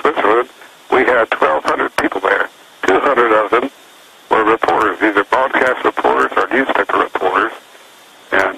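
Speech only: a man talking over a telephone line, the voice thin and cut off above the mid-range.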